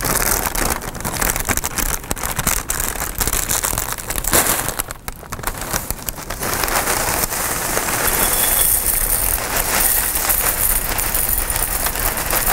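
Clear plastic snack bag crinkled and rustled loudly, a dense crackling that dips briefly about five seconds in.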